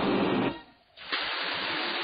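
A held note that slowly falls in pitch ends about half a second in; after a brief gap comes a steady, even hiss of escaping steam from a cartoon steam locomotive.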